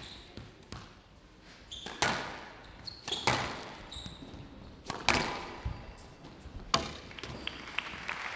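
Squash ball being struck by rackets and rebounding off the walls of a glass show court in a large hall: sharp cracks with echo roughly every one and a half seconds, the loudest about two, three, five and nearly seven seconds in, with short squeaks of shoes on the court floor between them.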